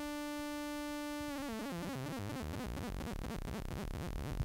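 Xfer Serum software synthesizer playing a held sawtooth note. It holds a steady pitch, then about a second in the pitch starts wobbling rapidly up and down as LFO 1 modulates it. The LFO smoothing is being turned up, which rounds the LFO's sharp steps into glides.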